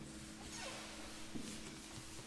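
A quiet pause in a Renaissance early-music performance: the last held note fades faintly, with a small creak and a soft knock partway through.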